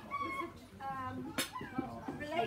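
Voices of people talking, with a single sharp click about one and a half seconds in.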